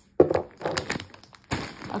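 Wax-melt packaging being handled on a wooden tabletop: a sharp thunk just after the start, then a stretch of crinkly rustling and small taps, and another knock about one and a half seconds in.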